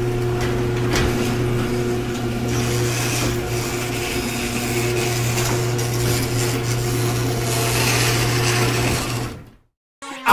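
A steady low mechanical hum with a hissing wash over it, fading out and cutting off about half a second before the end.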